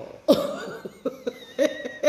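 A person coughing: a sudden loud cough, followed by a few shorter voiced sounds.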